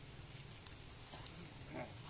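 Quiet pond-side background with a few faint splashes and a brief faint voice-like call about three-quarters of the way through, as men wade through the water drawing a drag net.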